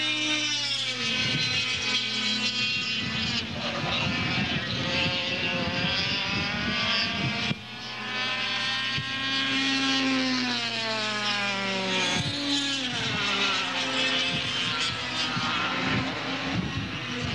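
Air-cooled two-stroke kart engines racing past, their buzzing pitch falling and rising again and again as the karts brake into corners and accelerate out.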